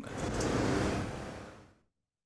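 Steady street traffic noise from cars and motorbikes, fading out over the last half second or so.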